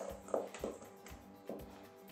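Background music with held, sustained notes. Over it come a few soft knocks of a spoon against a stainless steel mixing bowl as a thick paste is stirred.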